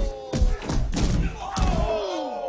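Film fight sound effects: a rapid series of hard punch and kick impacts, with long, falling yells over them.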